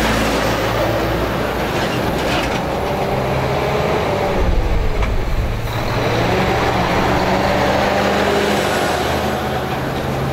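Heavy semi-trailer trucks passing close by on rough asphalt, their engines and tyres making a loud, steady rumble. The engine pitch sinks and rises again around the middle as one truck goes by and the next approaches.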